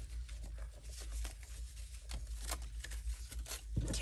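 Paper belly bands and card ephemera rustling and shuffling as they are flipped through by hand, with many small irregular clicks and crinkles.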